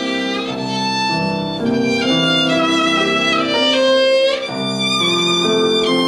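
Violin playing a bowed melody of sustained notes with vibrato, accompanied by piano.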